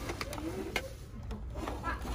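Several light plastic clicks and knocks as clear acrylic fragrance security cases are handled on a store shelf, over a low murmur of background voices.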